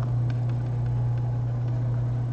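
Steady low hum from the recording setup, with a few faint ticks of a stylus writing on a tablet screen.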